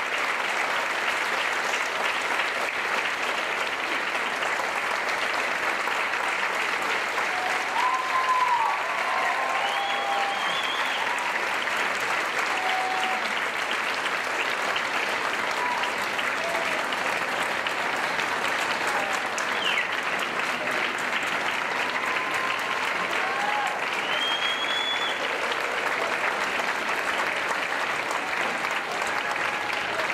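Audience applauding steadily throughout, with a few scattered whoops and cheers, including some about a third of the way in and again past the middle.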